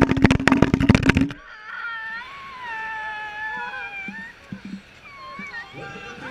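BMX crash heard from a GoPro on the falling rider or bike: a dense clatter of knocks and scraping as bike, rider and camera tumble on the dirt, cutting off abruptly a little over a second in. Then a voice calls out in long, wavering tones, like a moan or wail.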